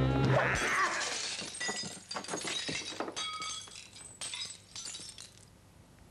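Things being smashed with a wooden club: a run of crashes of shattering glass and breaking objects over about five seconds, thinning out and dying away near the end.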